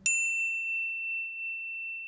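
A single bell-like ding struck once, a clear high tone that rings on and slowly fades, its brighter upper overtones dying away within the first half-second.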